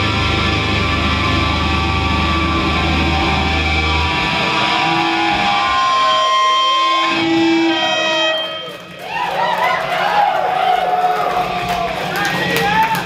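Live metal band ending a song. The last chord is held and ringing on distorted guitars and bass, then gives way to sustained and wavering high guitar tones and feedback, with a short dip in level about nine seconds in.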